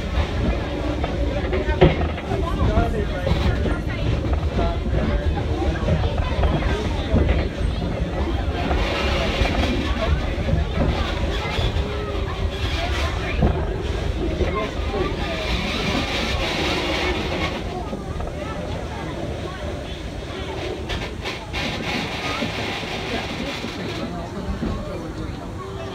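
Steady low rumble of a steam-hauled passenger train rolling slowly on the rails, heard from a coach just behind the locomotive Edison's tender, with people talking indistinctly over it. The rumble eases slightly near the end as the train slows toward the station.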